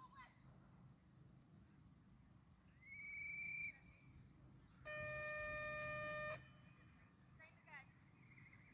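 Two held signal tones. A high one rises and then holds for under a second, about three seconds in. A lower, steady, horn-like tone with overtones follows and lasts about a second and a half. Faint bird calls come near the end.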